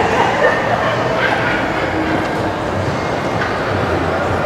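A startled woman shrieking and laughing in short, high-pitched bursts.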